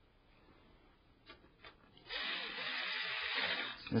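Electric screwdriver running steadily for a little under two seconds, driving a screw that holds the power supply to the computer case, after two faint clicks.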